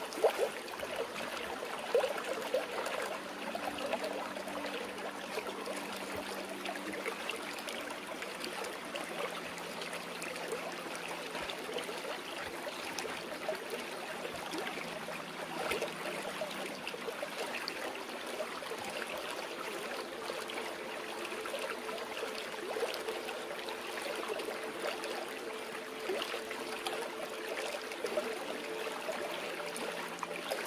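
Stream water flowing and trickling steadily over rocks, with a few small splashes near the start. Faint low notes of a soft music bed are held for several seconds at a time underneath.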